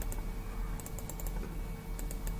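Light clicks at a computer, with a quick cluster of them about a second in, over a steady faint hum.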